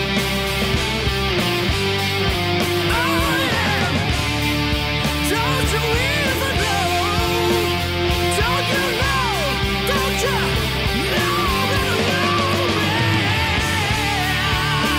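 Distorted Schecter Hellraiser electric guitar playing a blues-rock lead line with string bends and vibrato over a backing track with steady bass notes and drums.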